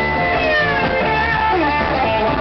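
Live rock-blues band playing: a lead electric guitar over bass guitar and drums, with guitar notes sliding down in pitch through the middle.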